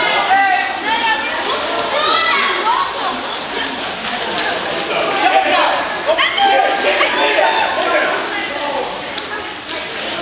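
Indistinct shouting and calling from many young voices, water polo players and poolside spectators, in an indoor swimming pool hall.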